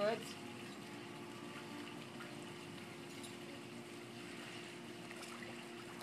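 Faint lapping of swimming-pool water over a steady low hum, with no distinct splash.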